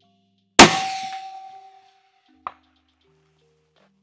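A 6 Creedmoor rifle shot, a loud crack trailing off over about a second, then about two seconds later a short, faint clank of the bullet hitting a steel target about 500 yards away.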